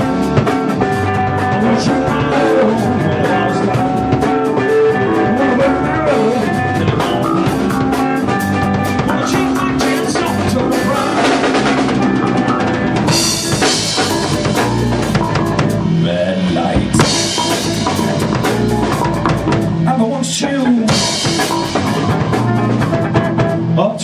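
Funk-rock band playing: electric guitar, electric bass and a drum kit keeping a steady beat.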